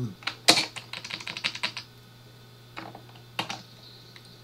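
Computer keyboard keystrokes: a quick run of key presses in the first two seconds, the sharpest about half a second in, then a pause and a few single taps near the end, as Emacs-style Ctrl shortcuts and arrow keys are pressed.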